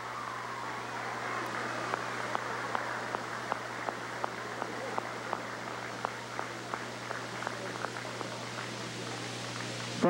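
Crowd applauding, with one nearby clapper's claps standing out sharply, nearly three a second, over a steady low hum.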